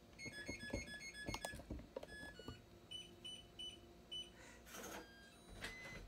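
Faint short high-pitched tones. A quick run of about four a second lasts for the first two seconds, then four more spaced tones come around three to four seconds in.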